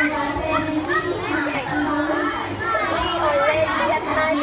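A crowd of children talking and calling over one another in a continuous hubbub of overlapping voices.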